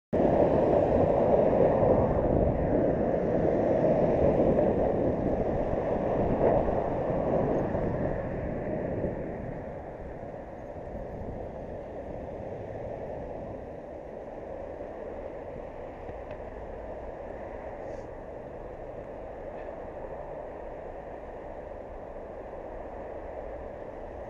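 Road traffic and wind noise on a cyclist's camera microphone while riding, a steady rumbling hiss that is louder for the first eight or nine seconds and then settles to a quieter, even level.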